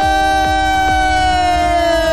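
A long, high, siren-like wail held on one note and sliding slowly lower, over a low steady drone, in the film's soundtrack.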